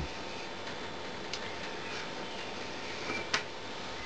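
Steady low hiss of a quiet room, with a faint click about a second in and a sharper, short click near the end as a small plug connector and its wire are handled on a table.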